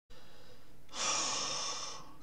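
A man's breath close to the microphone, one long, steady breath lasting about a second and starting about halfway through. Before it there is only faint room hiss.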